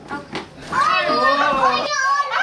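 Children's voices in excited play, several overlapping, louder from about a second in.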